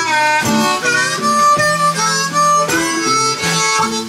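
Amplified blues harmonica solo played into a microphone, with held notes and bent notes sliding up and down, over archtop guitar and a snare drum and cymbal.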